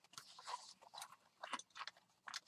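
Faint rustling and light taps of paper mini journals and cards being handled and laid out on a cutting mat, in short scattered bits.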